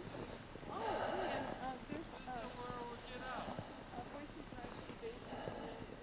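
Footsteps crunching on packed snow, the loudest crunch about a second in and another near the end, with faint voices of people talking between them.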